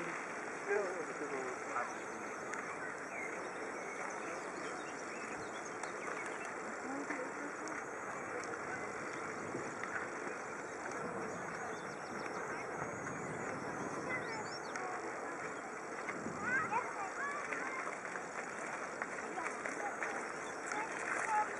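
Outdoor park ambience: a steady hiss of open air with faint voices of people in the distance, briefly louder near the end.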